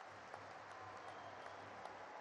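Faint applause from a large audience: an even wash of many hands clapping, with scattered sharper claps.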